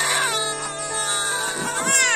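Newborn babies crying in short wails, one cry at the start and another rising and falling cry near the end, over steady background music.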